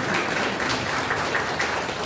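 An audience clapping: steady, dense applause.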